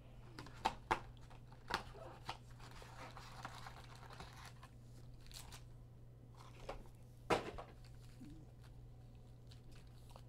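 Foil-wrapped football card packs and their cardboard hobby box handled: faint crinkling and rustling as the packs are slid out of the box and stacked, with scattered light clicks and one sharper tap about seven seconds in.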